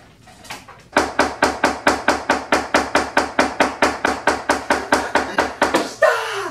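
A metal spoon knocking rapidly and evenly against a metal baking pan, about five knocks a second, starting about a second in, as brownie batter is spread in the pan.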